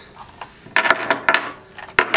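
Hard plastic clattering and clicking as a FrSky Taranis X-Lite radio transmitter is handled: a quick run of sharp clicks and knocks about a second in, then one more sharp click near the end.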